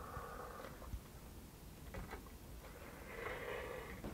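Faint rustle of cotton thread being drawn and wound around small nails on a string-art board, with a few light ticks.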